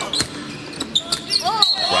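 Basketball bouncing on a hardwood court during play: several sharp bounces spread through the two seconds.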